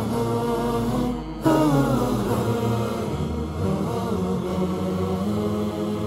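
Intro theme music of a vocal chant, sung in long held, wavering notes, getting louder about one and a half seconds in.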